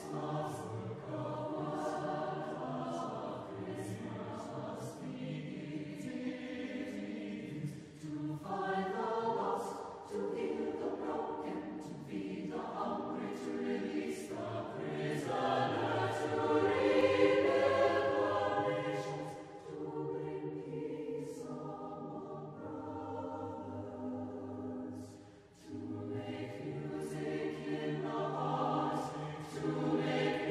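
Choir singing in long, slow phrases, with short breaks about 8, 19 and 25 seconds in and the fullest, loudest passage around 17 seconds in.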